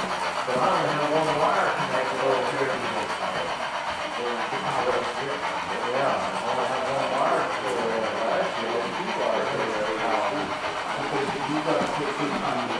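American Flyer S-gauge model trains running on the layout: a steady whir of the locomotive motors with the rumble of wheels on the track, shifting slightly in pitch as the trains move.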